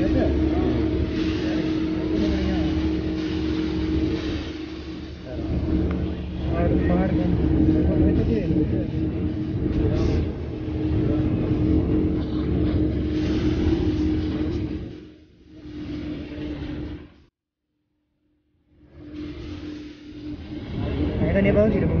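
A car driving at speed, its steady engine and road drone mixed with indistinct voices, cutting to silence for about a second and a half near the end.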